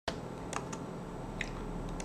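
A handful of light clicks from computer keys or a mouse, spread unevenly over two seconds, over a low steady hum.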